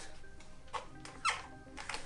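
Plastic welding helmet creaking as it is pulled on over the head, with three short squeaks falling in pitch, over faint background music.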